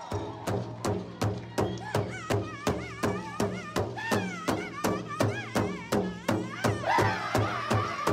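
Powwow-style drum song for a jingle dance: a drum beaten in a steady fast pulse of about three beats a second, with high wavering singing coming in about two seconds in and growing stronger near the end.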